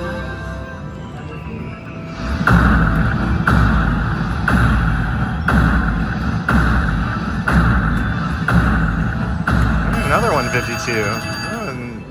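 Slot machine bonus music with a heavy beat about once a second, played while the wheel bonus runs and pays out, with gliding chime-like tones near the end.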